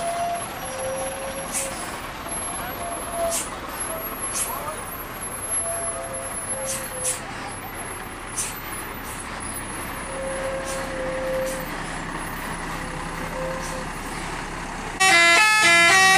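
Large vehicles driving past: a diesel truck and a tour bus running by, with people's voices. About a second before the end, a bus's multi-tone telolet horn starts playing a loud tune whose notes change pitch in steps.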